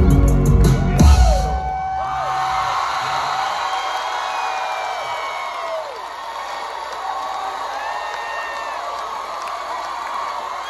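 A live band's loud song ends on a final hit about a second in, then a large concert crowd cheers, screams and whoops.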